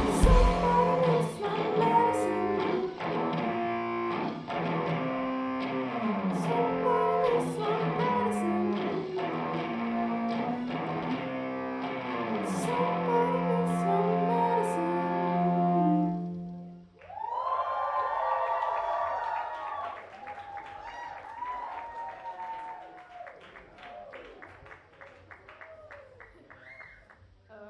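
Live band music: the drums and low end drop out at the start, leaving melodic guitar and voice ringing on for about sixteen seconds before stopping suddenly. An audience then cheers and claps, dying away.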